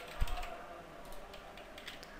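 Computer keyboard typing: a few scattered keystrokes, with a dull low thump just after the start as the loudest sound.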